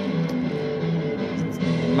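Live rock concert electric guitar playing held notes, heard as a recording played through a TV's speaker.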